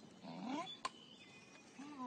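Dog whining through a stick held in its mouth: a short whine that rises and falls early on, then another starting near the end. About halfway through comes a single sharp knock of the stick against the bridge railing.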